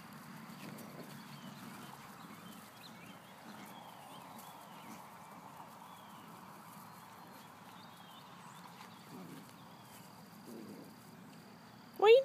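Faint scuffling and rustling as puppies tug at loose sweatpants on grass, with small soft clicks throughout. Faint high chirps sound in the background.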